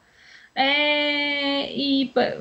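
A woman's drawn-out hesitation sound, "eh", held on one steady pitch for about a second, coming in about half a second in, followed by a short breath. It is heard through a Skype call link.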